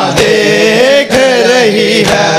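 A man's voice chanting a noha, with a crowd of mourners beating their chests together in time: two sharp slaps about a second apart.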